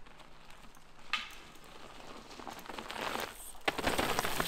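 Mountain bike tyres rolling over a rocky dirt trail, with a crackle of grit and leaf litter. It grows louder as the bike nears and has a sharp knock shortly before the end.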